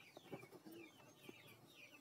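Near silence with faint, repeated short bird chirps in the background.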